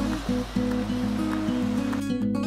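Background music: plucked acoustic-guitar-style notes over a steady bass, with a hiss-like wash, like surf or a swelling cymbal, layered over it.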